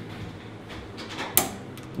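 A single sharp metallic click about one and a half seconds in as a pick works at the circlip holding an Öhlins TTX coil shock together, over a faint steady low hum.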